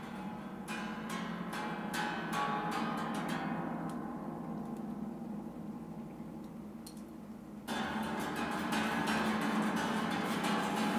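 Plucked strings ringing: a quick run of sharp plucks in the first few seconds that dies away, then a fresh, louder run of plucks starting suddenly near the end.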